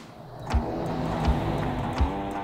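A Ford pickup truck driving past close by: engine and tyre noise swelling in about half a second in, under background music with a steady beat.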